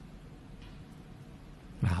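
Faint, steady room hiss through a pause in a man's talk, then his voice comes back near the end with an "ah".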